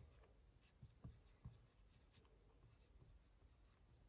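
Faint marker pen writing on a whiteboard: light strokes and taps of the felt tip, the clearest a few about one to one and a half seconds in.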